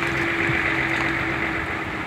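Steady noise of vehicle engines running at the roadside, with a constant hum throughout.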